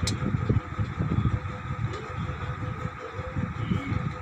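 Uneven low rumbling background noise with a faint steady hum underneath.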